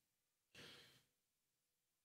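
Near silence, broken about half a second in by one short, faint breath from a man into a handheld microphone.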